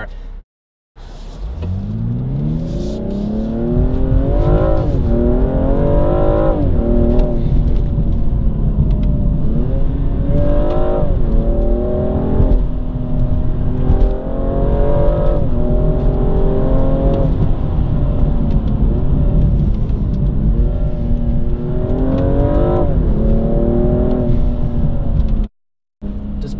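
BMW M235i's turbocharged 3.0-litre inline-six heard from inside the cabin, accelerating hard through the gears. The engine pitch climbs steeply in repeated runs, each broken by quick drops as the eight-speed automatic shifts up. The sound starts after a brief silent gap just after the start and cuts off abruptly just before the end.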